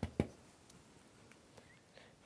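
Two quick soft taps of a large bristle brush being loaded on an oil-paint palette, close together at the very start, then quiet room tone.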